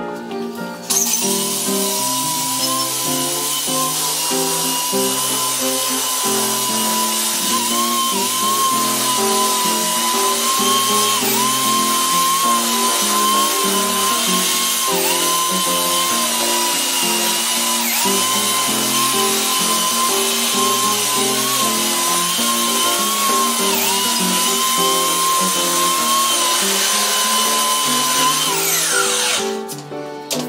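Belt sander sanding a wooden bench top: a steady whine that dips briefly now and then as it bites, starting about a second in and winding down with a falling whine near the end. Background music plays under it throughout.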